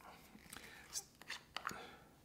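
Faint clicks and light rubbing from a glass jar with a plastic screw lid being handled, four or five small ticks spread over two seconds.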